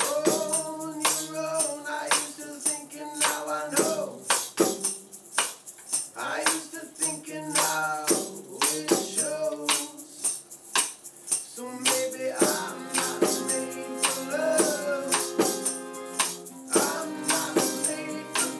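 A live acoustic psych-rock band playing: strummed acoustic guitars with a tambourine and shaker keeping a steady beat, and voices singing. About twelve seconds in, the sound gets fuller as more held notes join.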